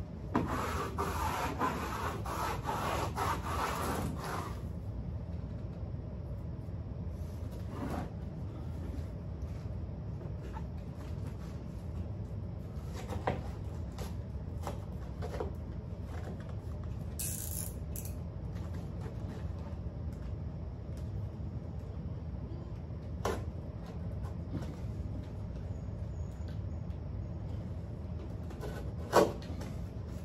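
Grasscloth wallpaper rubbing and scraping as it is worked by hand against the wall, for about the first four seconds. After that a steady low hum continues, broken by a few scattered taps and clicks, one louder near the end.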